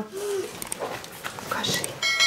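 A toddler's short 'a-a' vocal sound, followed by faint rustling and scratching as he handles a piece of cardboard and a pencil.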